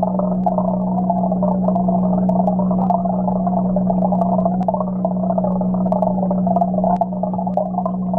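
Steady hum of an aquarium water pump with bubbling, churning water, heard muffled through an underwater camera, with scattered faint ticks.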